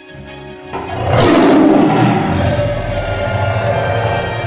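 Outro music with steady tones, broken about 0.7 s in by a sudden loud tiger roar sound effect that carries on over the music.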